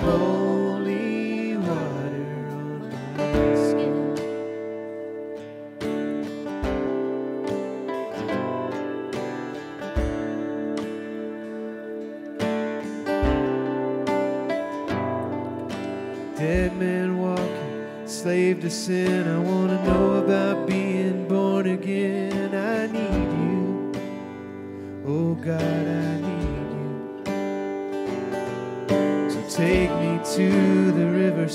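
A live worship band plays a slow song with strummed acoustic guitar and singing. A low beat falls about every three seconds.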